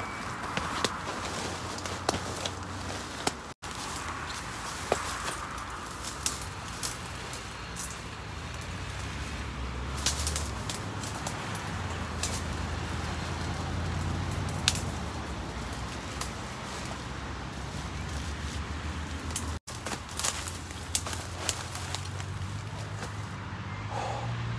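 Rustling of a pop-up tent's nylon against leafy hedge branches, with scattered twig cracks and snaps as the tent is pushed and worked into the bushes, over a steady low rumble of road traffic.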